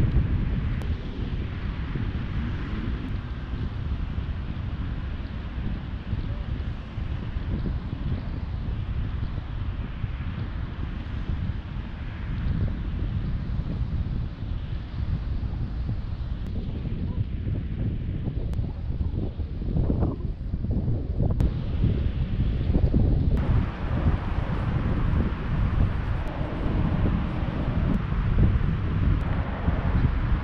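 Wind buffeting the camera microphone in uneven gusts, over a steady wash of shallow sea water.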